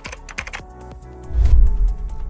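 Computer keyboard typing sound effect, a run of quick clicks, over intro music with a deep bass hit about one and a half seconds in.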